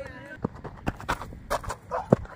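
Footsteps on dry ground, a series of irregular sharp knocks growing louder as the person nears, after a brief wavering shouted call at the start.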